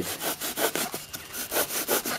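A bare hacksaw blade sawing through a block of foam in quick back-and-forth strokes, slicing off a sheet.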